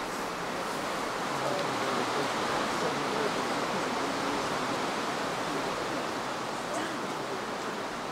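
Steady, even rushing noise with faint distant voices under it.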